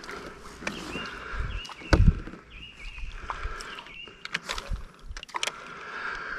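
Knocks and clicks of fishing gear and a paddle moving against a plastic kayak hull, with one louder thump about two seconds in.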